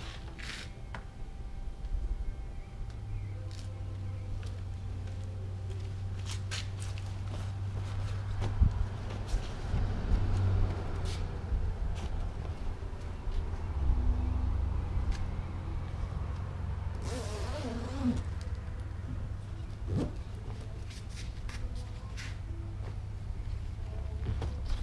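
A steady low rumble throughout, with scattered light clicks and rustles of a camper's canvas flaps being pulled down and straightened, and a brief louder rustling burst near the middle of the second half.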